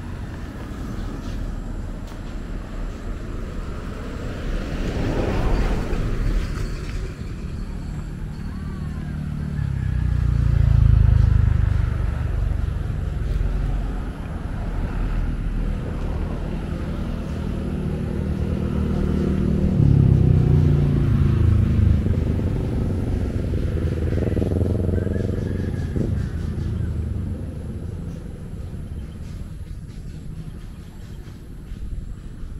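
Motor vehicles passing on a road: engine and tyre rumble that swells and fades several times, loudest about ten seconds in and again around twenty seconds.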